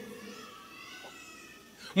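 A pause in a sermon: the preacher's voice dies away in the church's echo, leaving a quiet stretch with faint background voices.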